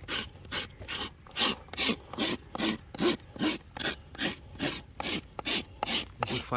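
Farrier's steel rasp filing a horse's hoof, dressing it before a shoe is fitted: short rasping strokes in a steady rhythm, about two and a half a second.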